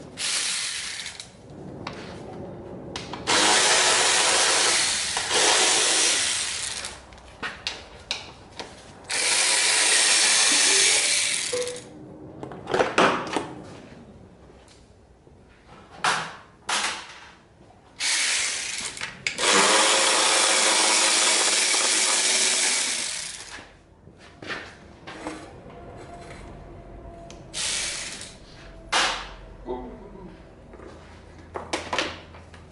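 Handheld power tool running in repeated bursts: three long runs of about three to four seconds each and several short ones, with quieter pauses between.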